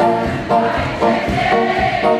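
A man singing to a strummed acoustic guitar, the strums coming about two a second; in the second half he holds one long note.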